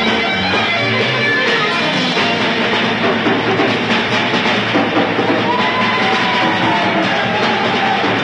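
Live rock 'n' roll band playing loud and steady, electric guitar and drum kit, with no singing.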